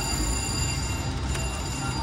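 Casino floor din: a steady mix of slot machines' electronic tones and chimes over a low hum, with no single sound standing out.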